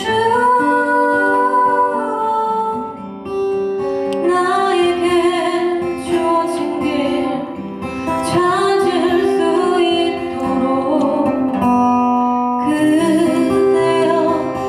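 A woman singing a Korean ballad with acoustic guitar accompaniment. She holds long notes, with short breaks between phrases.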